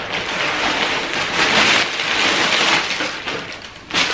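Thin plastic packaging bag rustling and crinkling as it is handled and pulled open. The crackly rustle is continuous and fades away shortly before the end.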